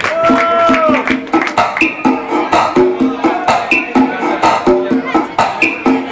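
Electronic dance music played live by a DJ on Pioneer CDJ-400 players and an Allen & Heath Xone:22 mixer over a PA. A held note opens it, then a steady beat of clicky percussion runs under a repeating riff.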